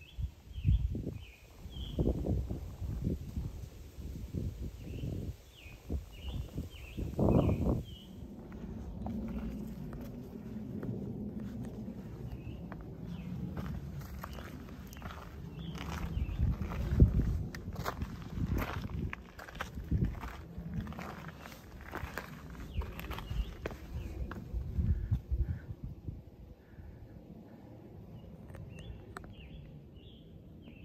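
A hiker's footsteps over a rocky outcrop: irregular boot steps and scuffs on rock, with a low rumble of wind or handling on the microphone from about a third of the way in. Short high bird chirps sound in the first several seconds.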